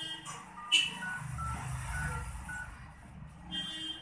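Steady low background rumble, with one loud sharp click or knock about three-quarters of a second in and a few faint, short, high beep-like tones at differing pitches in the middle.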